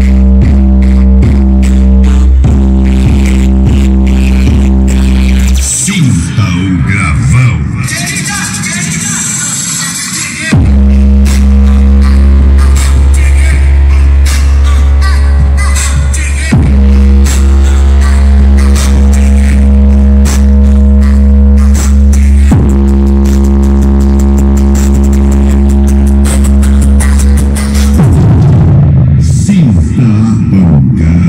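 Loud electronic dance music with heavy sustained bass played through a car-audio sound box with Hard Power subwoofers and horn tweeters driven by a SounDigital SD 8000 amplifier. The deep bass drops out for about five seconds early on and again near the end, then returns at full level.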